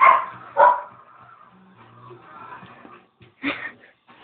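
A cat making short, unusual calls during rough play: two in quick succession at the start and one more near the end.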